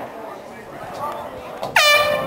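A loud air horn blast about three quarters of the way in: the pitch rises briefly, then holds a steady, buzzy tone that is still sounding at the end. Faint voices from the sideline come before it.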